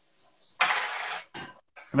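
Garlic hitting hot olive oil in a skillet: a short sizzle of just over half a second that cuts off sharply, followed by a fainter brief noise.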